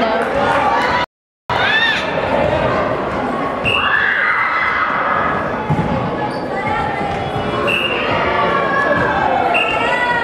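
High-pitched voices of girls and spectators calling out and chattering, echoing in a gymnasium during volleyball play, with a soft thump of the ball about halfway through. The sound cuts out completely for a moment about a second in.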